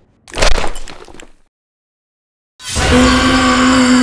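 A sharp cracking sound effect that fades over about a second, then a gap of dead silence. Then a loud, held, steady wail from the cartoon cow, over a rushing noise.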